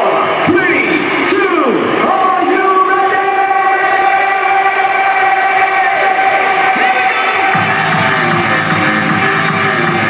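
Hardstyle DJ set playing through a large venue's sound system with the crowd: held synth chords with sweeping pitch glides, and the low bass coming in about three quarters of the way through.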